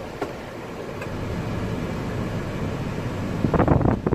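Steady low rumble and hiss inside a pickup truck's cab, with a brief louder burst of noise near the end.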